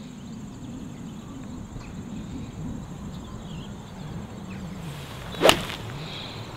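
A golf club strikes the ball once, a single sharp crack about five and a half seconds in, over a faint, steady outdoor background.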